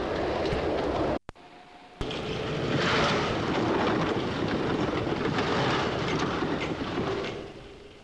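London Underground electric train running on the track, a steady rushing rumble. It drops out abruptly about a second in, comes back suddenly as a train passes close by, and fades away near the end.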